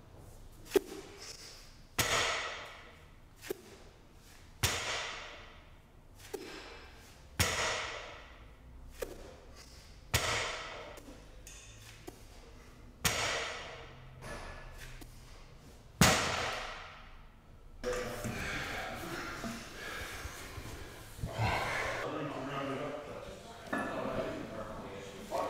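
A barbell loaded to about 220 kg set down on a rubber gym floor on each of six deadlift reps: six loud clanks of the plates, each ringing out for a second or so, about every three seconds, with a lighter click between them.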